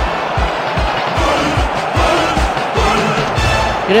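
Loud music with a fast steady beat, about two and a half beats a second.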